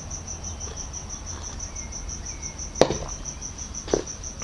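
A cricket chirping steadily in short high pulses, about five a second, over a low hum. A single sharp knock about three seconds in.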